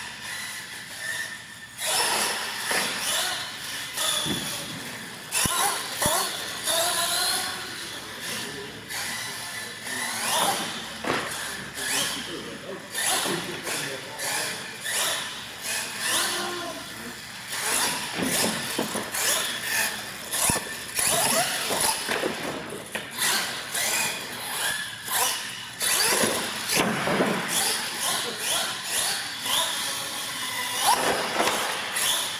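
Radio-controlled monster truck running on a concrete floor: its motor whines up and down in pitch as it speeds up and slows, with repeated knocks from bumps and landings. Voices can be heard in the background.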